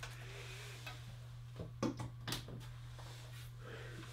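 Faint handling of a micro-USB power cable being plugged into a Google Home Mini smart speaker: a few light clicks and knocks about two seconds in, over a steady low hum.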